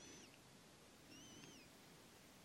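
Near silence with two faint, high chirps, each rising then falling: one at the very start and another about a second later. They are typical of a small bird calling.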